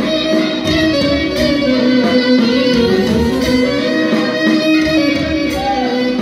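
A live Greek folk band playing dance music: a clarinet carries the melody over a plucked-string and keyboard accompaniment, at a loud, steady level.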